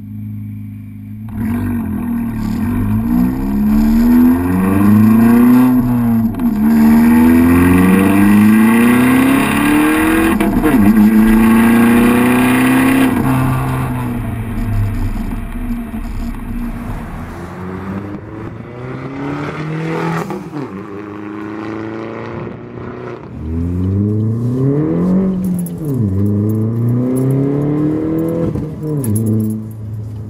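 2012 Chevrolet Sonic's 1.4-litre turbocharged four-cylinder through a ZZP cat-back exhaust with no muffler, heard at the tailpipe under load. It pulls hard through three gears, the pitch climbing and dropping at each upshift, eases off to a lighter cruise, then pulls through two more gears near the end.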